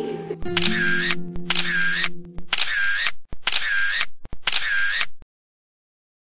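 End-card sound effect: five identical short clicky bursts about a second apart. A held music chord sounds under the first two and stops about halfway. The sound cuts off abruptly just after five seconds.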